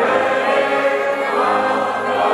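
A large crowd singing together in chorus, backed by a street brass band with sousaphones, trombones and bass drum.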